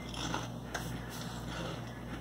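Potato chips being chewed: soft, faint crunching with a few small crunches.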